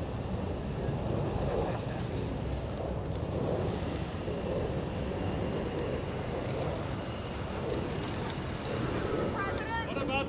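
Indistinct murmuring voices of a group of people talking among themselves outdoors, over a steady low rumble.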